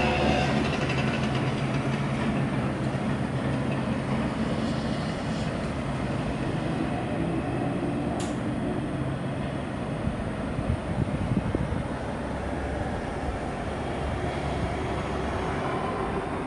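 Excavator diesel engine running steadily with a low rumble as it digs at a construction site, with a few light knocks in the latter half.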